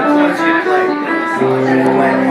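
Live acoustic band music with acoustic guitars, the held notes stepping from one pitch to another and a lower note coming in about one and a half seconds in.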